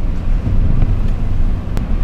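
Steady low rumble of a moving car heard from inside the cabin, engine and road noise, with one short click near the end.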